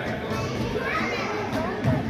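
Young children's voices calling and chattering during a basketball game in a gymnasium, with a thump near the end.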